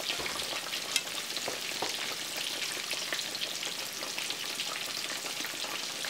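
Swai fish fillets deep-frying in hot oil in a cast iron skillet: a steady crackling sizzle full of fine pops, with one sharper pop about a second in.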